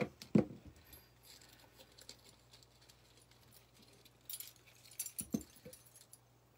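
Costume jewelry being handled: a few light metal clinks and rattles, with a sharper knock just after the start and another cluster of clinks about four to five seconds in.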